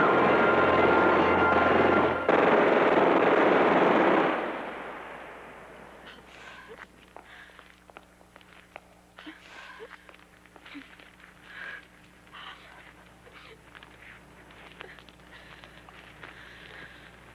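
Sustained automatic gunfire, loud and continuous with a brief break about two seconds in, cutting off about four seconds in. It is followed by a quiet stretch with faint scattered clicks and small movements.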